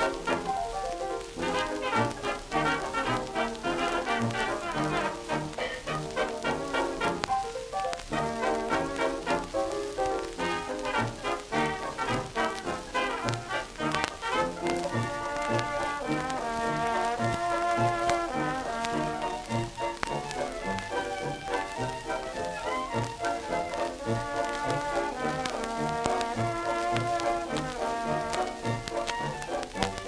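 1920s jazz band playing an instrumental passage, heard from a 1928 Banner 78 rpm shellac record: held melody notes over a steady bass beat, with surface crackle.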